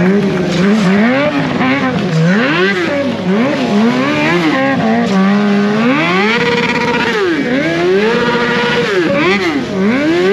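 Stunt motorcycle's engine revved hard up and down over and over, held steady at high revs twice, as the rear tyre spins in a smoking burnout drift.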